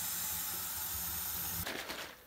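Tap water running into a plastic shaker bottle: a steady hiss of the stream that stops about three-quarters of the way through.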